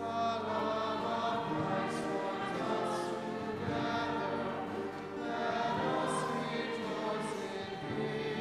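A church choir singing a hymn, with steady accompanying notes underneath.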